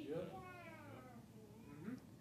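A faint, drawn-out high voice call that falls in pitch over about a second and fades out.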